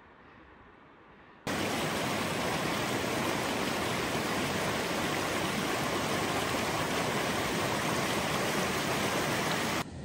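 Snowmelt mountain creek running high, its water rushing and foaming over rocks close by: a loud, steady rush that starts abruptly about a second and a half in and cuts off just before the end.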